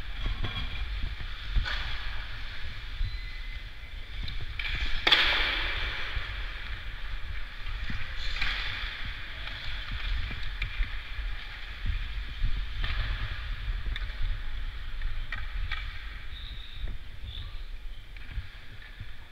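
Ice hockey skate blades cutting and scraping the ice stride after stride, with one louder, longer scrape about five seconds in, over a steady low rumble of air and movement on a helmet-mounted microphone.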